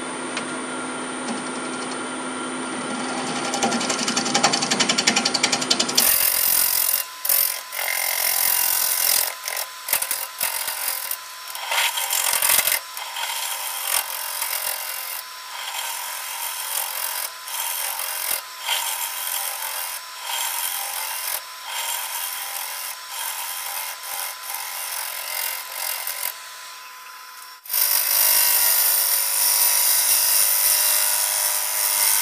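A gouge cutting a spinning sugar maple crotch blank on a wood lathe, a steady rough scraping that swells and drops as the tool takes passes. The sound changes abruptly about six seconds in and again near the end.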